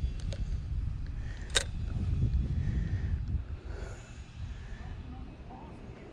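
Wind rumbling on the microphone, easing off after about three and a half seconds, with one sharp click about one and a half seconds in.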